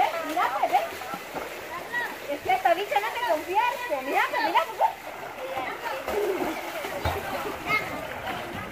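Water splashing in a swimming pool as swimmers kick and paddle, under girls' voices and chatter that are loudest in the first half.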